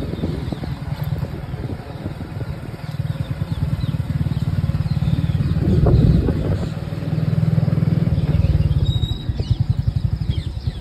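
Wind rumbling on the microphone of a moving vehicle, with engine noise underneath and a rapidly fluttering level. A few faint high chirps come near the end.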